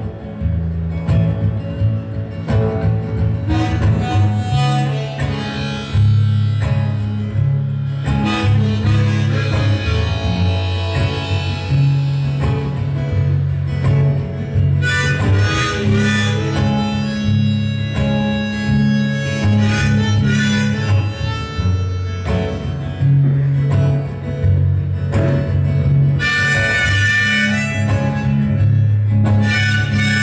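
Harmonica in a neck rack playing a melody over acoustic guitar, both played by one performer in an instrumental break of a live song.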